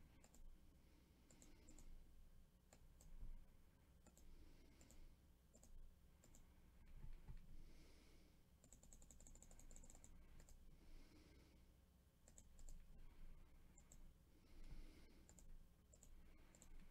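Near silence with faint computer mouse clicks and keyboard taps, including a quick run of taps about nine seconds in.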